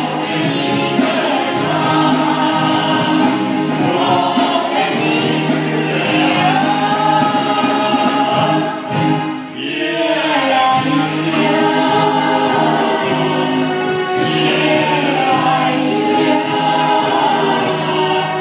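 Several voices singing together into microphones over a live band's accompaniment. There is a brief lull about halfway through.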